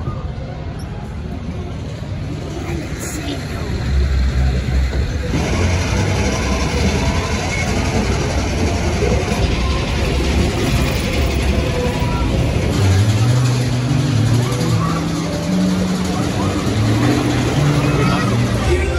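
Busy funfair din: background voices over a low rumble, getting louder a few seconds in. Fairground music joins about two-thirds of the way through, its bass notes stepping up and down.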